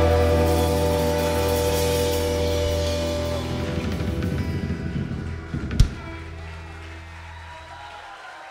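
A live rock band's final chord ringing out and fading away, guitars, bass and keyboard holding their notes as they die down. One sharp knock sounds about six seconds in.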